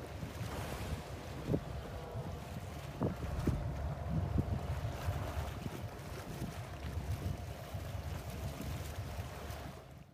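Open-water ambience from a whale-watching boat: a steady low engine hum and rumble with wind on the microphone, broken by a few short splashes or knocks of water against the hull. It cuts off suddenly at the end.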